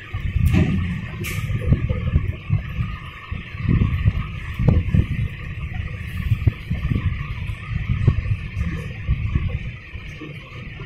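Handling noise from hands working cables and parts inside an opened laptop: an uneven low rumble with irregular soft knocks, and two sharp clicks in the first second and a half, over a steady hiss.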